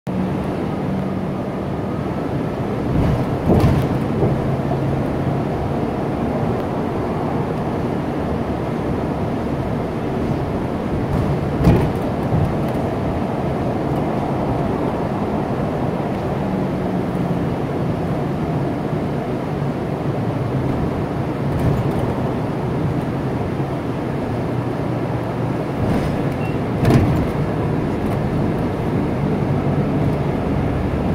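Inside a moving city bus: steady engine and road noise with a low hum, broken by three brief thumps, the loudest about twelve seconds in.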